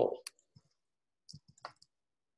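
The tail of a man's spoken word, then a few faint, short clicks about a second and a half in.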